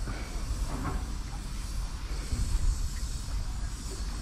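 Freight train of empty flat wagons rolling over the rail bridge overhead: a steady low rumble with a hiss above it.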